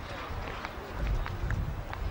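Outdoor ambience on a camcorder microphone: a low, uneven wind rumble on the mic throughout, with faint voices in the background.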